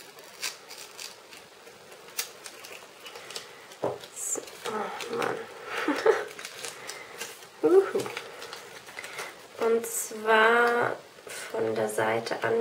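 Soft clicks and rustles of washi tape being unrolled and handled, with short hissy bits as it peels. From about the middle on, a woman's low muttering voice takes over, loudest near the end.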